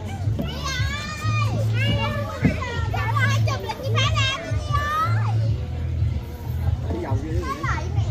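Children's high-pitched voices chattering and calling out for about five seconds, with another short call near the end. A low, uneven rumble runs underneath.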